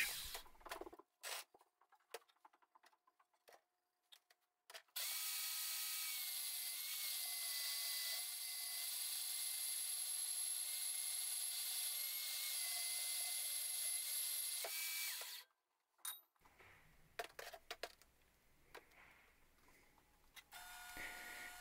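Portable band saw running for about ten seconds while cutting through 2-inch steel square tube: a steady motor whine whose pitch wavers slightly under load, starting about five seconds in and cutting off suddenly. Scattered clicks and knocks of handling the steel come before and after the cut.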